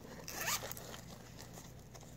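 A zipper on a small bag or pouch pulled open in one quick stroke about half a second in, followed by faint rustling.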